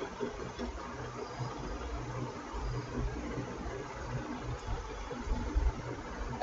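Steady low electrical hum with an even background hiss, the recording's own background noise with no distinct events.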